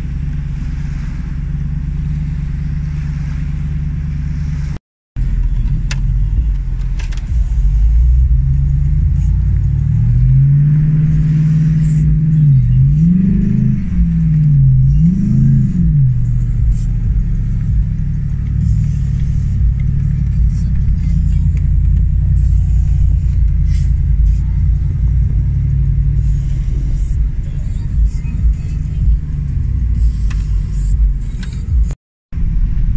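Car engine and road rumble heard from inside the cabin while driving, loud and low. Near the middle the engine's pitch rises and falls three times as it revs up and settles.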